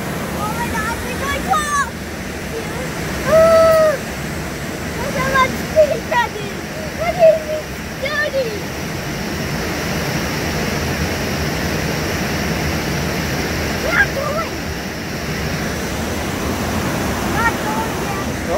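Whitewater rapids of a river-rapids ride rushing steadily around the raft, a continuous even rush of water.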